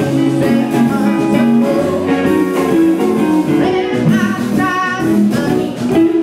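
Live blues band playing a song: electric guitar over a steady drum beat, with a woman singing.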